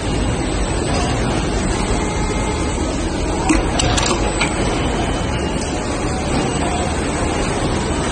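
Steady mechanical noise of injection molding machines running on a plug-molding floor, with a few short clicks and clatters about halfway through as a row of power cords is laid into the open mold.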